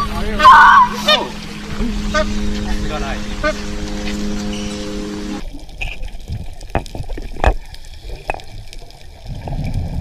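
A person's loud shout, then a steady low hum; after a sudden cut, muffled underwater water noise with a few sharp clicks.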